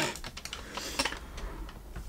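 Small makeup items and plastic cases clicking and rattling as they are rummaged through on a vanity, a string of light irregular ticks.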